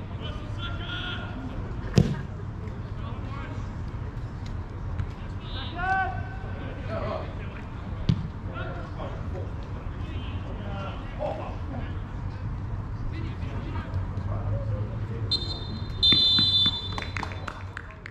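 Football match on an open pitch: a ball struck hard with a single thud about two seconds in, distant players' shouts, and a referee's whistle blown shrilly near the end.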